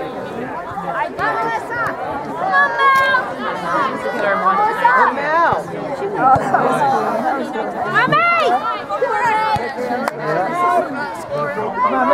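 Sideline spectators' overlapping chatter: several voices talking at once, none of it clear, with one voice holding a long call about three seconds in.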